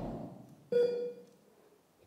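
A single short electronic beep, a steady tone lasting about half a second, a little under a second in, as the tail of a voice fades out.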